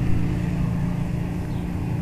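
Steady low engine drone of a vehicle idling, with no change through the moment.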